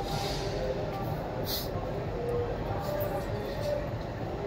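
Railway station ambience at a train door: a steady low rumble with indistinct voices in the background, and a short hiss about a second and a half in.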